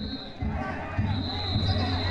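Danjiri festival procession: many voices calling and shouting over low drum beats, with a high, steady whistle tone held from about a second in.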